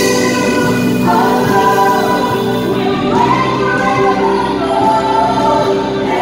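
Live Christian worship music: a band with keyboards playing under a male lead singer on microphone, with other voices singing along.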